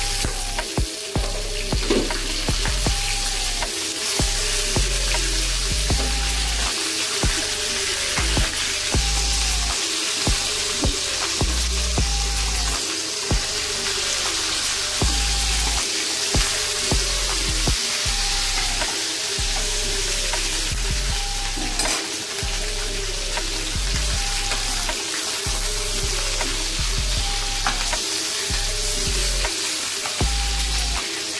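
Chicken pieces sizzling as they fry in oil in a pan, turned over with a slotted spatula that clicks and scrapes now and then. Background music with a repeating melody and bass line plays throughout.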